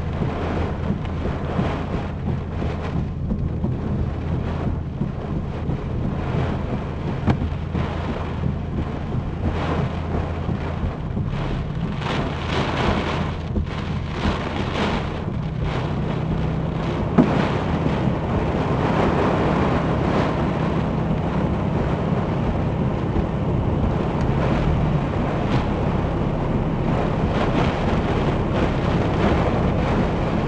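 Heavy rain and tornado winds buffeting a stopped car, heard from inside the cabin, over the steady low hum of the car's idling engine. A single sharp knock about seventeen seconds in.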